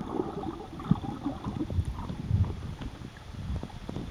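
Muffled sloshing and gurgling of shallow sea water heard by a camera held underwater, with irregular low rumbles and a few soft knocks.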